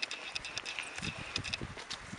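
Footsteps over leaf-strewn ground, with scattered sharp clicks and crackles and soft low thumps that come more often in the second second. A thin high whine is heard through the first half.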